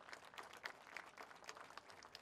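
Faint, scattered applause from an audience: soft, irregular claps.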